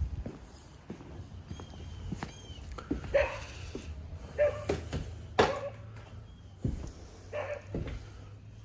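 A dog yipping and whimpering now and then, with footsteps and a single sharp knock about five seconds in.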